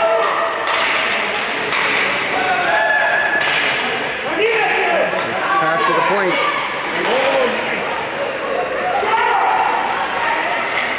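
Ice hockey game sound: scattered shouts from spectators and players, with several sharp thuds and slaps of puck, sticks and bodies against the boards.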